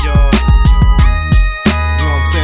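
West Coast G-funk hip hop beat without vocals: booming kick drums over a heavy bassline, with sustained high synth tones. The bass drops out for a moment near the end, then comes back.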